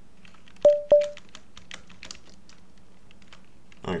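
Computer keyboard being typed on: a steady run of light key clicks. Early on, two short ringing beeps about a third of a second apart stand out as the loudest sounds.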